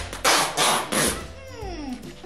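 Packing tape being pulled off its roll in several short, noisy pulls as it is wrapped around a seated person and chair. Near the end comes a brief sliding sound falling in pitch.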